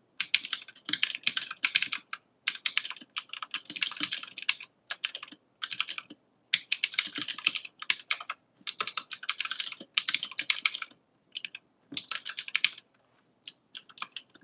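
Typing on a computer keyboard, keys clicking away in quick runs of a second or so with short pauses between, stopping near the end.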